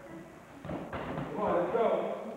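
A few dull thumps from sparring, strikes or footwork in padded gear, about half a second in, followed by a voice near the end.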